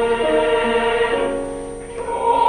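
Mixed choir of men's and women's voices singing held chords that shift from note to note, the phrase dying away near the end.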